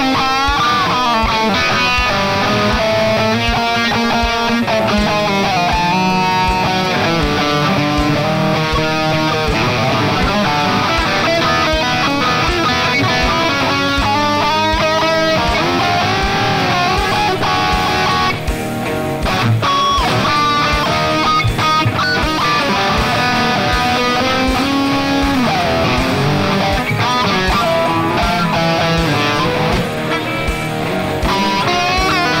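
Yamaha Pacifica electric guitar playing blues-rock lead lines, with bent notes and quick runs of notes.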